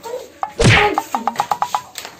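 A loud whack of a blow landing in a staged slapstick fight, about half a second in. It is followed by a fast, even run of about eight short ticks on one steady high note.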